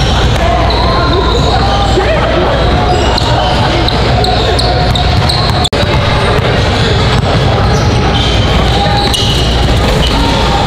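A basketball bouncing on a hardwood gym floor, with voices echoing in a large hall. The sound cuts out for an instant just before the middle.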